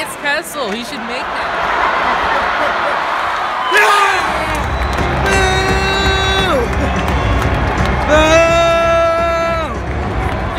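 Crowd noise in a packed hockey arena. About four seconds in, the arena's sound system cuts in with a deep rumble and two long held, horn-like tones, each dropping in pitch as it ends.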